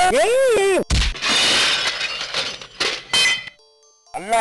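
A drawn-out vocal cry that rises and falls in pitch, then, about a second in, a crash and a window pane shattering, with glass tinkling and falling for a couple of seconds before stopping suddenly.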